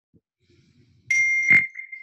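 A single electronic ding: a steady high chime tone starts about a second in and rings on, with a short click partway through.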